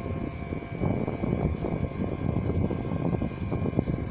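A steady mechanical hum with a thin high whine, like an idling electric train's equipment, over uneven low rumbling that comes and goes.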